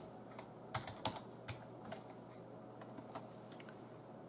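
Computer keyboard typing: a few irregular, faint keystroke clicks, a cluster of them about a second in and a couple more later, over a faint steady room hum.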